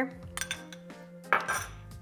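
A few light clinks of a metal spoon against a glass bowl as spice rub is emptied out onto the meat, the sharpest about a second and a half in. Soft background music plays underneath.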